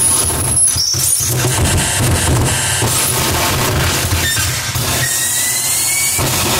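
Harsh noise music from a table of effects pedals: a dense, loud wall of distorted noise with a heavy low rumble, broken by brief dropouts about a second in. A thin rising whine cuts through near the end.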